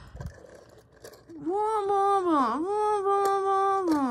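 A child's voice holding one long, high, steady note, dipping in pitch once partway through and sliding down at the end.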